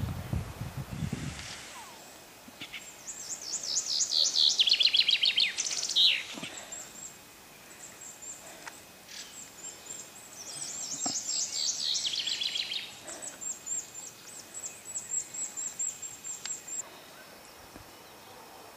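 A songbird singing twice, each phrase a couple of seconds of quick notes stepping down in pitch and ending in a short flourish, with high thin chirps between the phrases.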